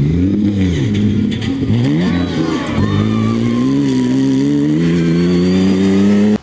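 Mitsubishi Pajero rally car's engine under hard acceleration on a gravel stage. The revs rise and drop several times in the first half, then hold higher and steadier as it drives past.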